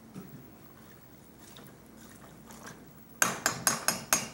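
Metal spoon stirring wet mustard greens in a stainless steel pot, a faint wet sloshing, then near the end a quick run of sharp metallic knocks of the spoon against the pot.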